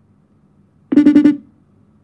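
A short, loud buzzy electronic beep lasting about half a second, about a second in, from the mobile phone being used for a live call.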